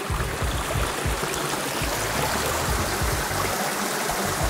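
Shallow rocky creek trickling steadily, with an uneven low rumble on the microphone.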